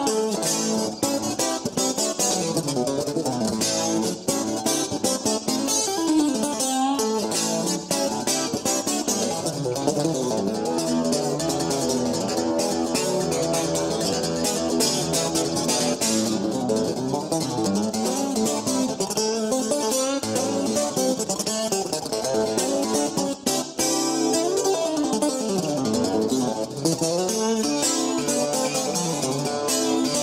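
Solo guitar instrumental, plucked notes played throughout, with notes sliding down and back up in pitch several times.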